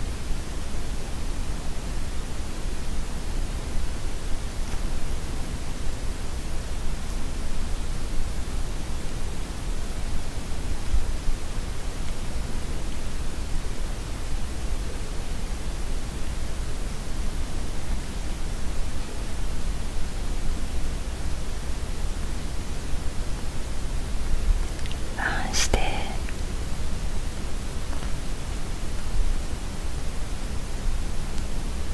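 Steady, even hiss of background noise, with one short, soft voice sound about 25 seconds in.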